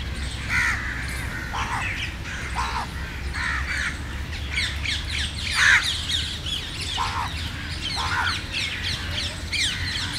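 A flock of rose-ringed parakeets calling: many short, harsh, shrill calls overlapping without a break, a few louder ones standing out, the loudest about six seconds in.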